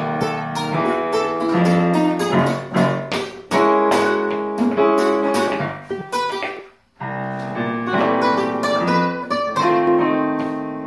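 Guitars playing a blues progression, strummed chords and plucked notes, in a blues exercise that moves up a half step every six bars. The playing stops briefly just before seven seconds in, then picks up again.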